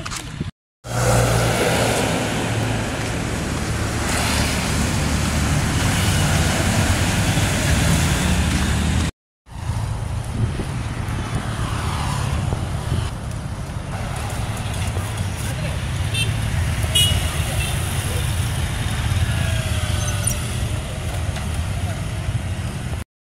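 Street traffic: motorbike and car engines running and passing on a road, a steady hum under road noise. It drops out briefly twice, about half a second in and again about nine seconds in.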